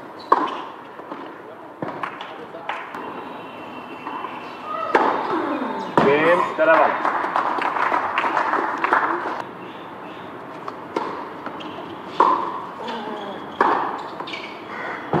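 Tennis ball struck by rackets and bouncing on a hard court, single sharp pops with gaps between them, near the start and again near the end. In the middle, a loud stretch of voices lasting a few seconds.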